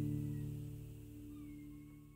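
Acoustic guitar's final chord ringing out and fading steadily away, with faint high gliding tones in the second half.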